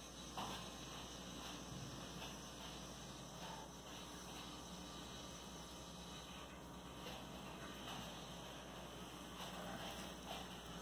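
Faint handling sounds of plastic-gloved hands pressing a rolled, egg-dipped pancake into breadcrumbs, with a few soft brief ticks over a steady low hum.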